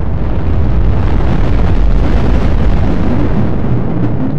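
Cinematic logo-intro sound effect: a loud, sustained explosion-like rumble with deep bass.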